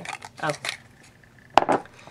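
A single sharp clack, with a brief rattle after it, from a small cup being handled about one and a half seconds in, as the small packaged pin inside it is taken out.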